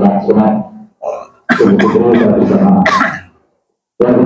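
A man's voice amplified through a microphone and loudspeaker, speaking in two long, evenly pitched phrases, with a short break about a second in and silence near the end.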